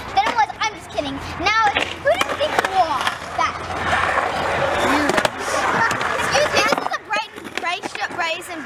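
Children's voices talking over one another, over the rolling rumble of skateboard wheels on concrete. The rumble stops about seven seconds in.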